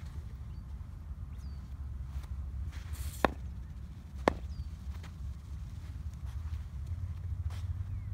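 Two sharp knocks about a second apart over a steady low rumble.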